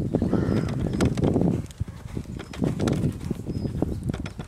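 Horse cantering on a rubber-chip arena surface: a continuous run of dull hoofbeats and thuds as it approaches and goes over a small show jump.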